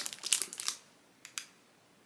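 Thin plastic packaging around a pack of pens crinkling as it is handled: a few brief crackles in the first second and one more short crackle about a second later.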